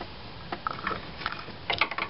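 Scattered light metallic clicks and taps from a hand clamp and the small motorcycle cylinder head it grips, as the clamp is held tight to keep a valve spring compressed, with a quick cluster of clicks near the end.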